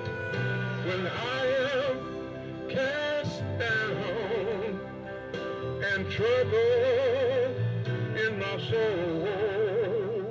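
A man singing a slow gospel hymn into a microphone, holding long notes with a wide vibrato, over sustained instrumental accompaniment.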